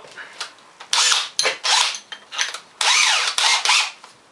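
Cordless drill run in several short trigger bursts, the motor whine rising and falling in pitch as its chuck is closed on a part.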